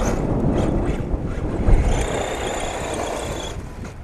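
Orange RC short-course truck driving off across the gravel, its motor giving a steady high whine from about halfway that fades near the end, over a low rumble.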